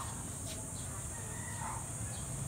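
Steady high-pitched insect drone with a faint rooster crowing in the distance.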